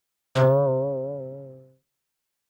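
A single cartoon 'boing' sound effect: one twangy note with a wobbling pitch, starting about a third of a second in and dying away over about a second and a half.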